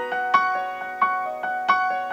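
Soft piano-sound keyboard music: a slow line of ringing notes, about three a second, each one sustained over the last.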